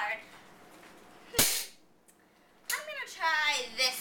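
A single sharp bang about a second and a half in, followed near the end by a female voice.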